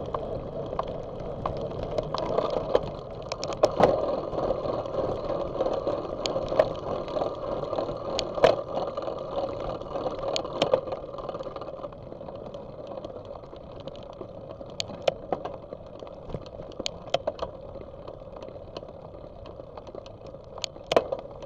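Bicycle ride noise picked up by a bike-mounted camera: a steady rush of tyre and wind noise with scattered sharp rattling clicks from the bike and mount over road bumps, easing off a little past the middle.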